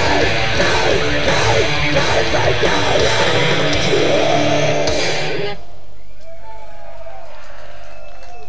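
Blackened death metal band playing live: distorted electric guitars, bass and drums, the song ending abruptly about five and a half seconds in. A quieter stretch of crowd yells follows.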